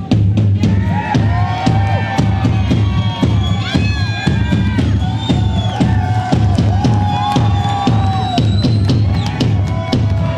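Hard rock band playing live and loud: a drum kit beating steadily over a heavy low bass, with bending, sliding lead lines on top.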